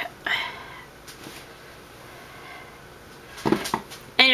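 A cat meowing in the background, one short call just after the start, over low room noise; the cat is described as going crazy.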